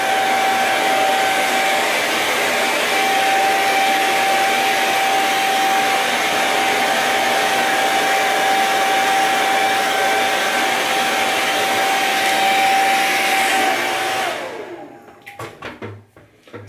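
Handheld hair dryer running on its low setting, blowing air with a steady whine. About fourteen seconds in it is switched off and the whine falls away as the motor winds down.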